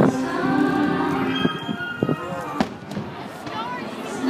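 Fireworks show music playing over loudspeakers, with sustained voices and instruments, while aerial firework shells burst overhead in a few sharp bangs, the loudest about two and a half seconds in.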